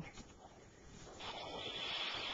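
Battery-powered electronic toy set off by static from a foil-covered plasma ball, its speaker giving a steady high-pitched electronic tone over hiss that starts about a second in and grows louder. Its sound is kind of screwed up.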